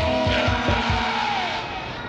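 Grime DJ mix between tracks: the beat thins out and fades under a noisy wash and a held tone that bends down, with the level sagging near the end.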